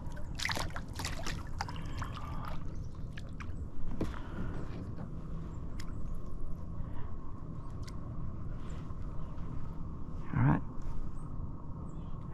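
Water sloshing and dripping at the side of a kayak as a crappie is let go into the water and a paddle is dipped, with several sharp clicks in the first two seconds. A short vocal sound comes near the end.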